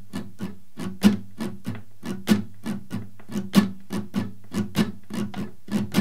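Steel-string acoustic guitar, capoed at the second fret, strummed in a steady swung up-down pattern at about four strokes a second. Roughly every 1.2 s one stroke stands out louder: the accented second down stroke of the pattern.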